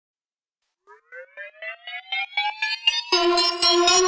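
Song intro: a synthesizer riser, short repeated notes pulsing about six times a second, gliding upward in pitch and growing louder from about a second in. A fuller, sustained chord comes in near the end.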